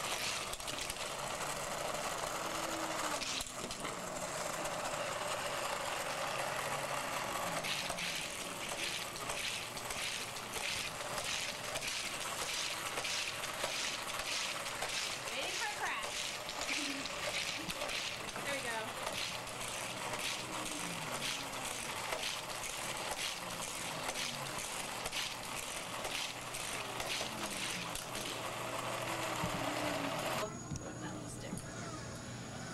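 Battery-powered booster of a Hot Wheels Criss Cross Crash track set running, with die-cast cars rattling around the plastic figure-eight track. Rapid repeated clicks, a few a second, come from the cars through most of the middle of the stretch.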